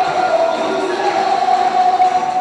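Ambient sound of an indoor sports hall during a game: a steady, echoing din of noise with a steady droning tone under it.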